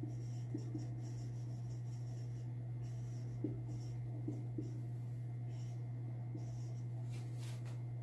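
Marker pen writing on a whiteboard: faint, scattered pen strokes over a steady low hum.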